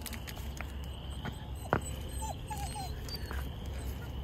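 A chorus of frogs calling without a break, heard as a steady high trill, over a low steady rumble. A single sharp click comes a little under two seconds in, and a few brief higher squeaks follow.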